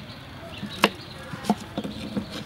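Kitchen knife chopping carrots on a wooden chopping block. One sharp chop comes a little under a second in, then two lighter ones near the end.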